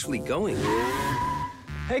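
A woman's brief line of speech, then a car's tyres squeal for about a second as it skids to a stop, over background music.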